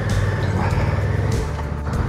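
Motorcycle engine running steadily at low city speed, with road and wind rumble, under background music.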